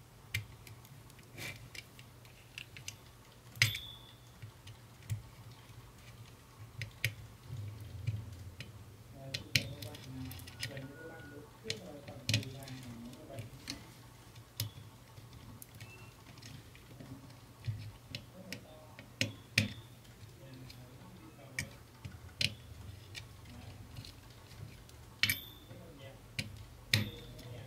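Scattered small clicks and taps of a screwdriver and wire ends being worked into the screw terminals of an amplifier circuit board, irregular, with quiet gaps between them, over a low steady hum.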